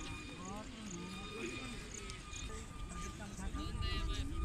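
Indistinct voices of several people talking at a distance, with a low wind rumble on the microphone that grows stronger near the end.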